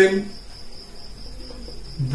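A steady, high-pitched insect trill that runs on unbroken, with the end of a spoken word at the very start.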